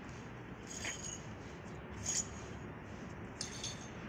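Shards of broken shop-window glass clinking faintly: a few light, sharp clinks about a second apart over a low steady hum.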